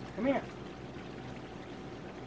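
Water running and pouring steadily into a bath tub, with a man shouting "Come here!" to a dog at the start.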